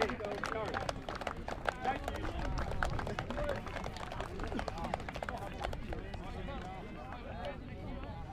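Several people's voices chatting at once, with scattered sharp hand claps and slaps. The claps are thickest in the first couple of seconds and thin out after.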